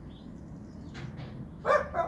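A dog barking: two quick, sharp barks close together near the end.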